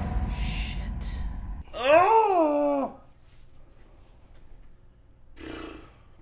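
A man's drawn-out groan of frustration about two seconds in, rising then falling in pitch for about a second. Before it, a low rumble dies away.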